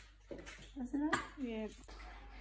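A single sharp clink of tableware on the table about a second in, with people talking quietly around it.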